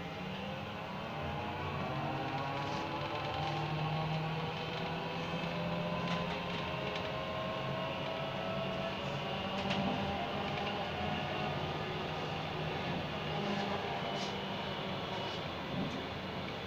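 Inside a moving city bus: the drive's note climbs gently in pitch as it gathers speed over the first several seconds, then holds steady over continuous road rumble, with a few light rattles.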